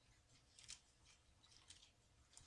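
Faint rustling of Bible pages being turned by hand, with a couple of soft swishes about a second apart.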